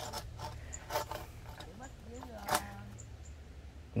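A few faint, scattered knocks and scrapes of work on wood, with a brief quiet voice a little past the middle.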